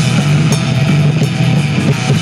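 Rock band playing live without vocals: electric guitars, bass guitar and a Yamaha drum kit, loud and dense without a break.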